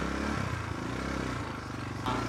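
Quad bike (ATV) engine idling steadily, with a slight shift in its note about half a second in.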